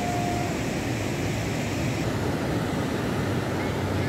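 Flood-swollen Teesta river rushing past in a steady, deep roar of fast water. A brief steady tone stops about half a second in.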